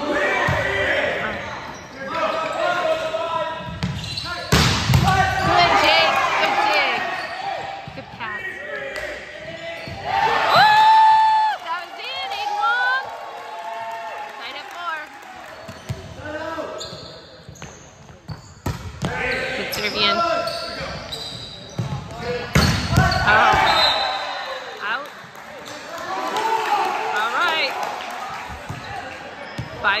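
Indoor volleyball game: the ball smacking off hands and the hard court in quick rallies, with players and spectators shouting, all echoing in the large gym hall.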